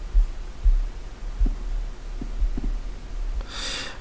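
Several dull, low thumps at irregular intervals over a steady low mains-like hum, like knocks carried through a desk into the microphone; a breath is drawn near the end.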